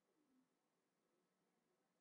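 Near silence, with only a very faint, brief falling tone in the first half second.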